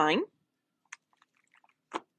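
A woman's voice finishing a sentence, then a few faint light clicks and rustles of cellophane-wrapped sticker packaging being handled, with a short crinkle near the end.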